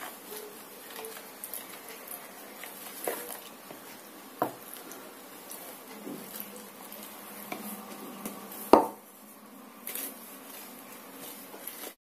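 Metal spoon stirring and scraping flour in a plastic bowl as liquid is poured in, mixing it into dough, with a few light knocks of spoon or jug. The loudest knock comes about three-quarters of the way through.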